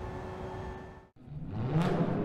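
A faint steady background bed fades out about a second in. Then the channel's logo sting starts: a sound effect that swells with a rising pitch sweep and peaks in a sharp burst near the end.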